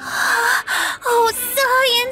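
A young woman gasps twice, in short breathy intakes, then makes brief wordless surprised vocal sounds whose pitch slides up and down.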